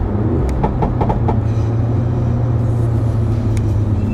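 Alfa Romeo Giulietta Veloce S's 1750 TBi turbocharged inline four-cylinder engine running at a steady drone under way, heard from inside the cabin over tyre and road noise.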